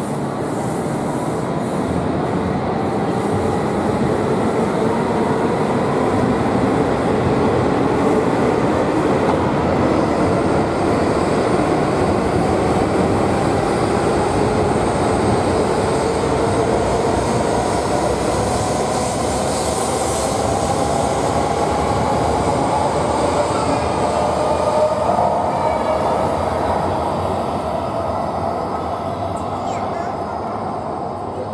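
E5 series Shinkansen train moving along the station platform, its motor whine rising slowly in pitch as it picks up speed, over the rush of wheels and air. The sound swells through the middle and eases off near the end.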